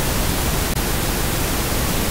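Loud, steady static hiss of an untuned analog television: white-noise TV snow.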